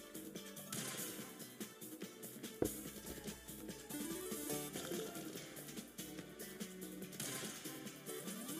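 Online slot game soundtrack, quiet: light electronic music with short click and chime effects as the free-spin reels drop and tumble.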